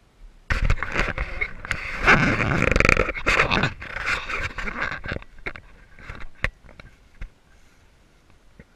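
Handling noise on the camera as it is picked up and moved: rubbing, scraping and knocks on the microphone. It is dense for the first few seconds, then thins to scattered clicks.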